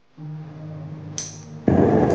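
A rain shower is switched on: a click from the push-button panel, then a sudden loud rush of water spray about three-quarters of the way in, which keeps running.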